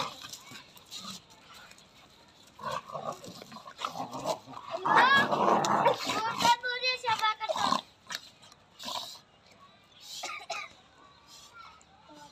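A Rottweiler and a Labrador growling and snarling as they play-fight, in uneven bursts, loudest in a flurry of snarls and higher cries from about five to eight seconds in.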